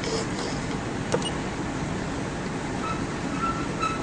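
Steady background noise, a hum and hiss, with a single sharp click about a second in.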